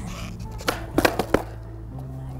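Skateboard heelflip attempt on asphalt: a sharp knock of the tail popping about two-thirds of a second in, then a quick run of knocks about a second in as the board and the skater's shoes come down, the trick not landed.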